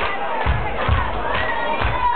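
Club crowd cheering and shouting over an amplified beat, whose low thumps come about twice a second.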